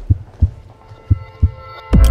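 Heartbeat sound effect: two double low thumps, lub-dub, about a second apart, with faint synthesised music tones building underneath towards the end.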